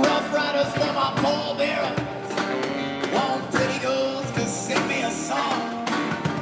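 A man singing live into a microphone while strumming an acoustic guitar, in a folk-rock song at a steady pace.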